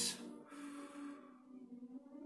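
Soft background music with steady held notes, and an audible breath right at the start.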